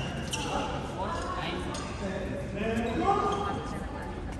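Indistinct voices of players talking in a large echoing sports hall, with a few sharp taps among them.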